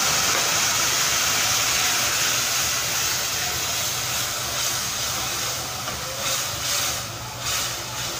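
Wet ground onion-tomato masala paste sizzling loudly in hot mustard oil in a metal kadai as it is stirred with a wooden spatula. The sizzle slowly dies down as the paste cools the oil.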